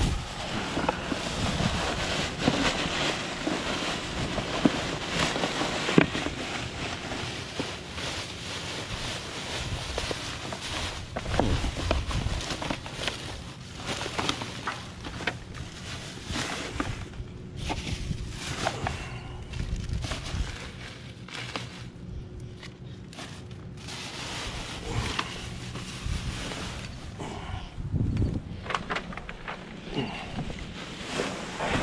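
Plastic garbage bags rustling and crinkling as gloved hands rummage through trash, with scattered knocks and clicks of the contents. It grows quieter for a few seconds about two-thirds of the way in.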